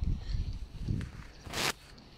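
Handling noise on a phone's microphone: low rubbing and small knocks as the phone moves against clothing, with a short rustle about one and a half seconds in.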